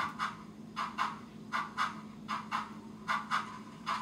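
Tsunami2 digital sound decoder in a model steam locomotive playing a slow articulated steam exhaust, with chuffs in uneven pairs about every three-quarters of a second. The front and rear engines' chuffs drift in and out of sync at the decoder's medium wheel-slip rate.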